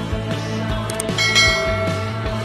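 Background music over an end-screen animation, with a short click about a second in and then a bright bell ding that rings out: the click and notification-bell sound effects of a subscribe-button animation.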